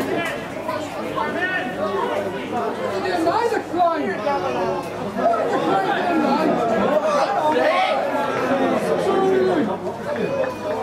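Several people talking over one another, indistinct chatter with no single clear voice.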